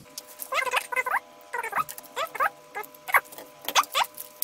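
Fast-forwarded footage with its sound sped up: quick, high-pitched squeaky chirps that rise in pitch, about eight of them, like a voice played at high speed, over a steady hum of several tones.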